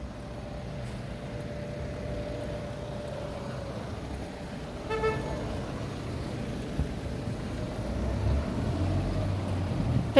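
Street traffic: vehicle engines running with a steady low rumble, a short horn toot about five seconds in, and a heavier engine rumble building near the end.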